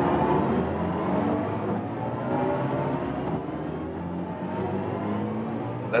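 BMW i4 M50 accelerating hard in Sport Boost mode from about 130 to 200 km/h, heard inside the cabin: the electric drive's layered synthetic drive tone (BMW IconicSounds) rises steadily in pitch with speed, several pitches climbing together over road and wind noise.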